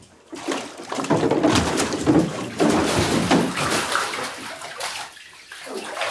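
Water splashing and sloshing irregularly in a filled bathtub as a person's head is held down in it, starting about half a second in and easing briefly near the end.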